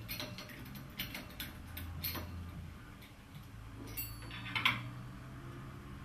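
Light metallic clicks and ticks of a steel cleaning-tool tube working against the brass nozzle and burner of a multifuel camping stove as the nozzle is unscrewed. There is a run of small ticks in the first two seconds and a sharper pair of clicks about four and a half seconds in.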